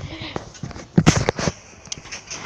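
Handling noise from a handheld camera being moved: a quick run of knocks and rubs about a second in.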